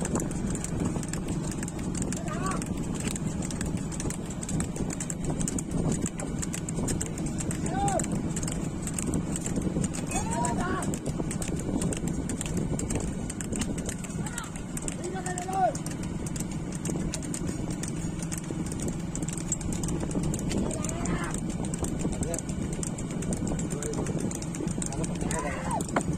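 Bull's hooves clattering on a paved road as an ox-racing cart is driven along at speed, over a steady low drone. Brief shouts urging the bulls on come every few seconds.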